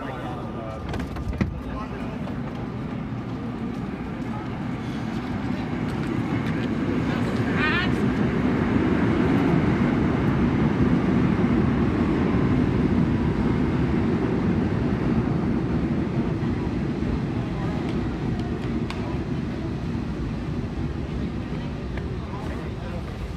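R32 subway train pulling into the station and slowing to a stop. The rumble of its wheels and motors builds over several seconds, holds at its loudest for a few seconds, then eases off as the train comes to rest.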